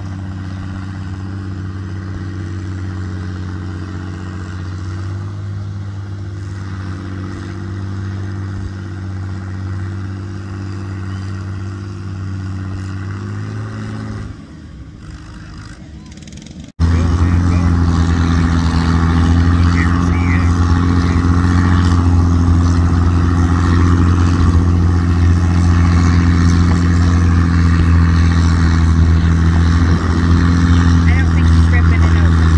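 A tractor engine running steadily. Its note wavers and falls away about fourteen seconds in. After a sudden cut, a louder, very steady engine note follows as the Farmall 560 pulls the weight-transfer sled.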